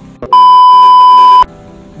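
One loud, steady electronic beep, a single held tone lasting about a second, starting a moment in and cutting off sharply.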